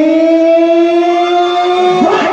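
A live band's lead melody instrument holding one long, loud note rich in overtones, rising very slightly in pitch and stopping at the end.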